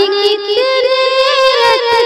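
A female voice singing a ghazal, holding a long note that steps up in pitch about half a second in and wavers slightly as it is held.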